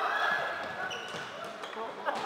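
Players' drawn-out shouts and calls, echoing in a large sports hall during a floorball game, trailing off over the first second. They are followed by a few short squeaks, typical of shoes on the court floor.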